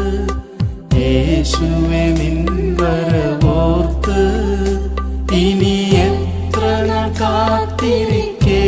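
Malayalam Christian worship song: a melody line, chant-like, over a steady low drone, with short pauses between phrases about half a second in and again near the middle.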